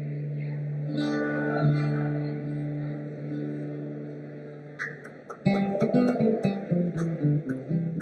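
Guitars played live: a held chord rings and slowly fades, then steady rhythmic strumming comes in about five and a half seconds in.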